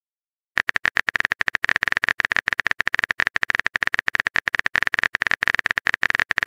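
Phone keyboard typing sound effect: rapid, even clicks, many per second, starting about half a second in.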